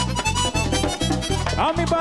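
Merengue típico band playing: a diatonic button accordion plays a fast melodic run over a steady, driving bass-and-drum beat.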